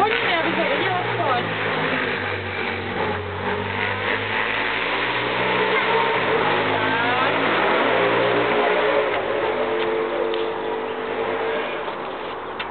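An engine running steadily, its pitch shifting slowly up and down a few times.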